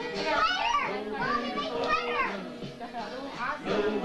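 Children's voices calling out high and swooping in pitch, twice in the first couple of seconds, over music with singing.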